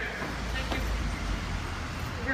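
Low steady rumble of road traffic and nearby vehicles outdoors.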